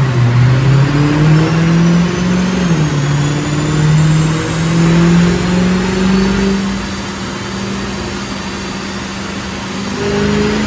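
Mercedes-Benz C63's 6.2-litre V8 through a Fi-Exhaust valved cat-back, its note climbing slowly in pitch under acceleration. It dips once near three seconds in, like an upshift, climbs again, then holds a steady, slightly quieter tone for the last few seconds.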